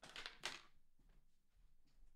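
Near silence: room tone, with a few faint, brief noises in the first half second.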